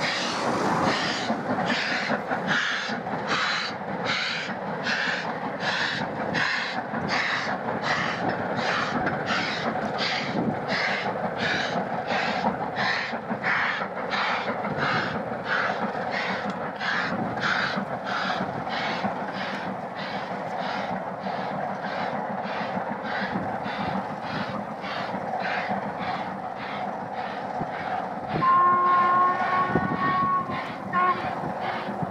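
Steam locomotive working hard with a train, its exhaust beating steadily at about one and a half chuffs a second over the running rumble of the coaches. A short whistle sounds near the end.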